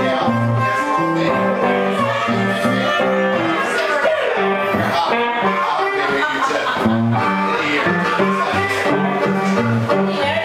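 Live blues duo: guitar playing a repeating low bass-note pattern with a harmonica (blues harp) playing held, bending notes over it.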